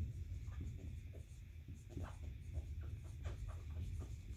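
Dry-erase marker writing on a whiteboard: a run of short, scratchy strokes, over a low steady hum.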